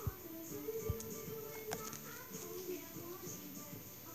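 Quiet music with a melody playing in the background from a video on a TV or device in the room, with a few faint clicks.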